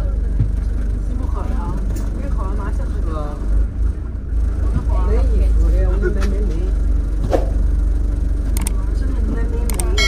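Steady low rumble of a double-decker bus's engine and road noise heard from the top deck, with people's voices talking over it. A few sharp clicks come in the second half.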